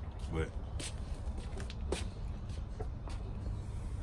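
Steady low rumble with a few light knocks and taps, from a rear spoiler being carried and handled.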